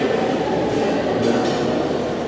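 String orchestra of violins, violas, cellos and double bass playing, heard as a loud, steady, muddy blend with no single clear note standing out.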